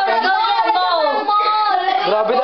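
A young girl's high voice singing, with drawn-out notes that slide up and down.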